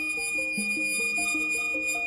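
Background music, a melody of short stepped notes, over a steady high-pitched squeal from an Anycubic Photon resin printer's Z axis as the build platform travels. The squeal has been there since the printer was bought, and attempts to fix it have failed.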